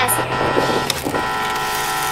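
Ambulance siren sound effect: a steady chord-like horn tone held for about a second, broken briefly, then held again for another second, over a low rumble.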